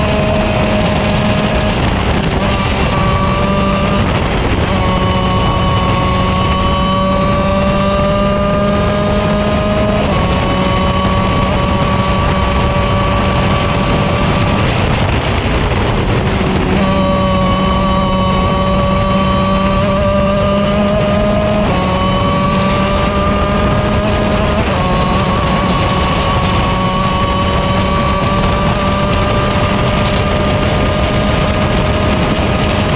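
125cc KZ shifter kart's two-stroke engine running hard, heard on board: its note climbs slowly through each stretch and breaks off about six times at gear changes, with a longer drop near the middle as the kart slows for a bend.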